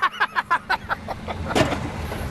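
A man laughing heartily in rapid pulses for about a second, then the low, steady hum of a golf cart starting to pull away.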